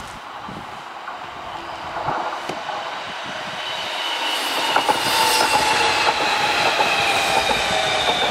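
Amsterdam metro train arriving and growing louder as it draws alongside the platform. Its wheels click over the rail joints, and from about halfway through a high whine falls slowly in pitch as the train slows.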